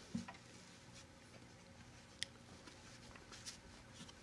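Near silence: room tone with a few faint rustles and small clicks of headphones being put on and adjusted over the ears.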